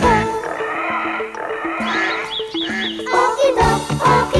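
Sitcom theme music in a break without the beat or singing: held steady notes, with four quick high chirps about two seconds in, before the beat comes back near the end.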